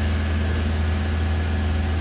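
A large machine engine idling steadily: an even, deep hum that does not change.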